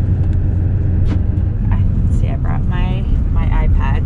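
Steady low rumble of road and engine noise inside a moving vehicle's cabin. A person talks briefly over it in the second half.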